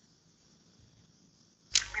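Near silence, with even the line's low hum gone, for most of the time. Then a man's voice starts speaking near the end.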